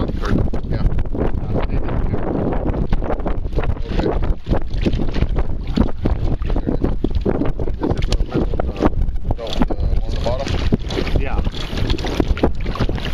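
Wind buffeting the microphone over choppy water that laps and slaps against the side of a small kayak: a steady loud rumble with frequent small splashes.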